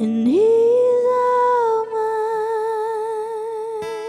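Music: a singer's voice slides up about an octave into one long held note with no words, steady at first and then with a regular vibrato from about halfway through.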